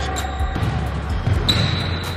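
Basketball bouncing on a hardwood gym court during a pickup game, a few separate thuds.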